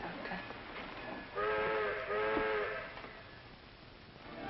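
A steam train whistle blows two long blasts in quick succession, a chord of several tones that sags in pitch as each blast ends, over a low hiss.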